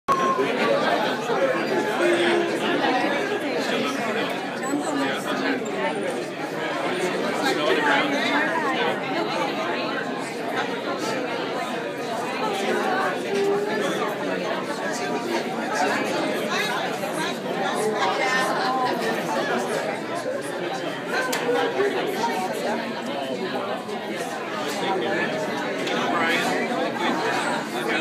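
Chatter of many people talking at once, a steady babble of overlapping conversations with no single voice standing out.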